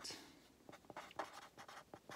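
Pen writing on paper held on a clipboard: a series of faint, short scratching strokes as a word is written out.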